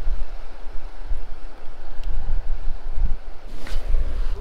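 Wind buffeting the camera's microphone: a gusty, uneven low rumble, with a brief rustle near the end.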